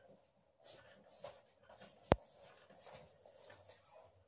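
Faint rustling and shuffling movements in a quiet room, with one sharp click about two seconds in.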